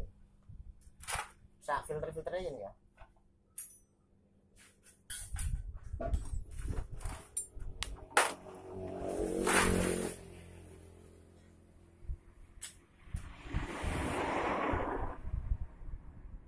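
Metal hand tools clinking and knocking as they are picked through and handled, a run of sharp clicks in the middle. There is brief indistinct speech near the start and two louder spells of noise later on.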